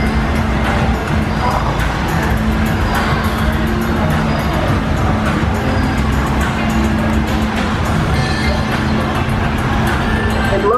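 Chocolate-factory dark-ride soundtrack: background music mixed with steady factory-machinery noise, a constant hum with frequent light clicks and clatters.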